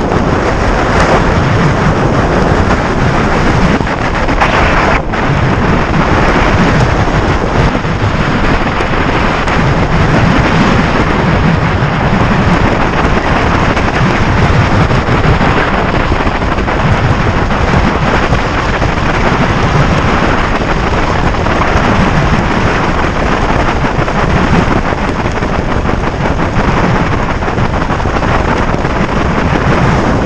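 Wind rushing over a wrist-mounted camera's microphone during a tandem parachute descent under an open canopy: loud, steady wind noise.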